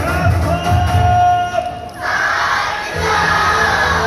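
Yosakoi dance music with a heavy beat plays over a PA. About halfway the beat drops out and a large group shouts together in a sustained chant, the beat coming back in under the shouting about a second later.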